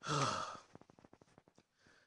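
A man's heavy sigh of exasperation, voiced and falling in pitch over about half a second, followed by a few faint clicks.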